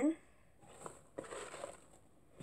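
Soft rustling and a couple of light knocks as a hand rummages in a cardboard box and lifts out a small tin.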